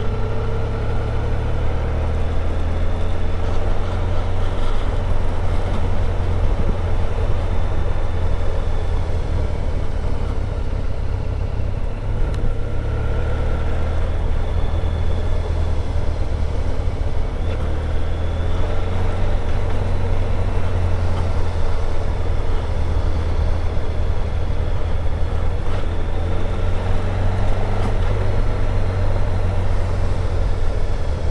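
Honda VFR1200X Crosstourer's V4 engine and exhaust running steadily while riding along a lane, with a heavy low rumble and road noise from the rear tyre.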